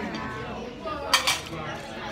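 Two sharp clicks in quick succession, a little over a second in, like small hard objects knocking together.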